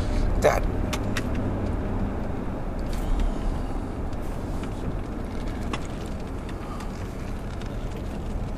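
Car engine and road noise heard from inside the cabin while driving: a steady low rumble that eases off gradually, with a few faint clicks.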